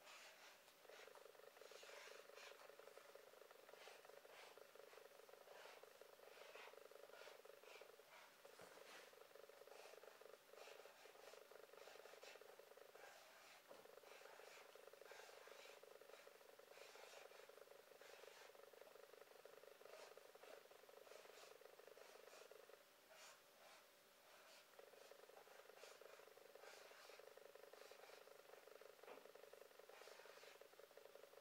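Felt-tip marker squeaking and scratching on paper as letters are written out. It is a faint, rasping buzz broken by short pauses between strokes, the longest about two-thirds of the way through.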